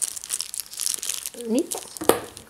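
Small clear plastic bag crinkling as it is handled and turned over in the hands, a quick run of irregular crackles.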